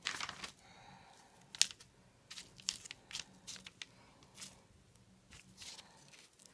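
Plastic fork loaded with paint pressed again and again onto paper laid over newspaper: several brief, irregular taps and paper crinkles.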